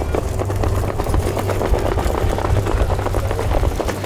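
Hoofbeats of trotting harness-race horses pulling sulkies along a dirt track, a fast irregular patter of hooves over a steady low rumble.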